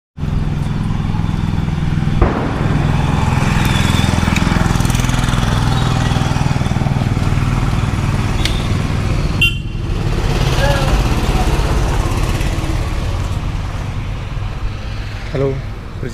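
Motor vehicle engines running on the road close by, a steady low rumble, with a single knock about two seconds in and a brief dropout about halfway through.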